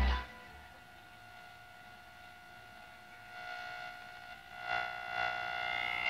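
A steady, high-pitched electrical buzz with a clear pitch comes in about three seconds in and grows louder near the end. It is an unexplained interference noise, and no light or appliance in the shed is switched on.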